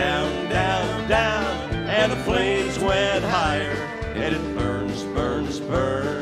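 Live country band music: acoustic and electric guitars over a steady drum beat.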